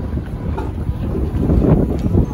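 Wind buffeting the microphone: a loud, uneven low rumble that rises and falls in gusts.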